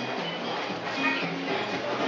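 Background music playing in a shop, with people's voices underneath.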